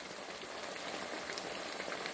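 Coconut oil sizzling steadily around pieces of coated chicken thigh shallow-frying in a skillet.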